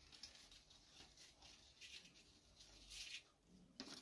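Near silence, with a few faint, short rustles of ribbon and paper being handled as a knot is tied around a tissue-paper-covered papier-mâché balloon.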